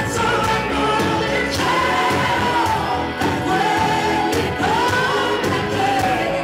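A woman singing a pop ballad live with a band, holding long notes that slide down and waver.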